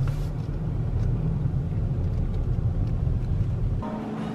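Steady low rumble of a car heard inside its cabin, cutting off suddenly shortly before the end.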